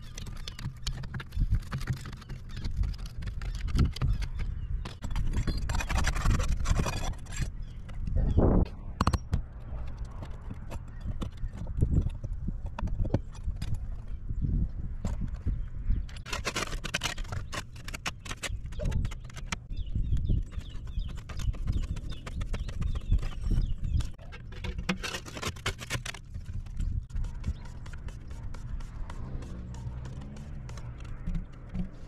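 Hand tools working asphalt roof shingles: snips cutting and trimming shingle, and a pry bar and other tools tapping, clicking and scraping on the gritty surface. The sounds come in an irregular string of small knocks and clicks, with short scraping bursts about 6, 16 and 25 seconds in.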